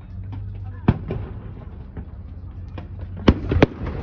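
Fireworks display: aerial shells bursting with sharp bangs, one a little under a second in and another just after, then the two loudest close together near the end.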